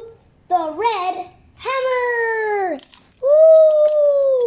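A child's voice: a short phrase, then two long drawn-out sung calls, the first falling in pitch as it ends, the second held level and louder.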